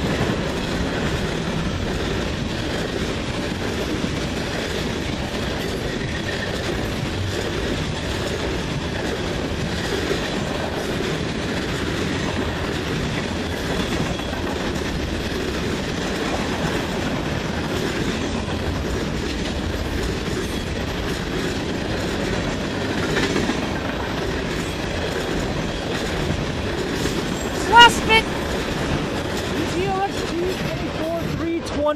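Freight cars of a manifest train rolling past steadily on the rails. A brief, loud high-pitched tone sounds near the end.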